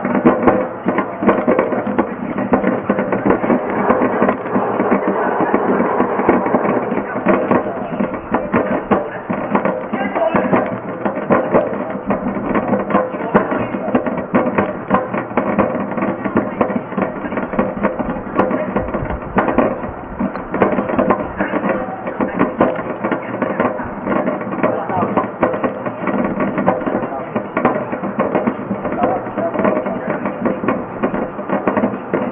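Pulian AH-260 slow-speed granulator crushing plastic: a dense, irregular run of cracks and snaps that goes on steadily without a break.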